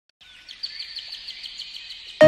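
A bird chirping: a quick, even run of short high chirps, about six or seven a second, starting a moment in.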